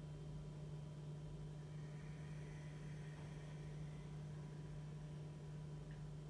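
Quiet room tone with a steady low electrical hum and faint thin tones above it.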